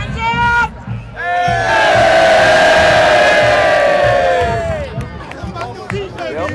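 A football team yelling together in one long, loud group shout, preceded by a brief single shout; the voices drop in pitch as the yell dies away.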